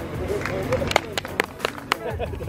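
Longswords clashing in a sword bout: about six sharp strikes in quick, irregular succession through the second half, with spectators' voices underneath.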